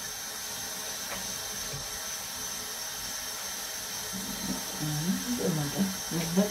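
Steady hiss of water running from a tap into a bathroom sink while a cat is washed in it. Near the end, a person's low voice hums or murmurs over it.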